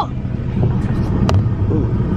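Steady low rumble of a car, heard from inside a car's cabin, with a single sharp click about a second and a bit in.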